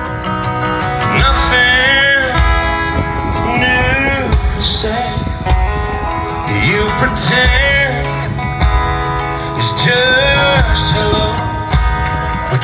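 Live country band playing a slow ballad: a male lead singer sings in phrases over strummed acoustic guitar, electric guitar, keyboard, bass and drums.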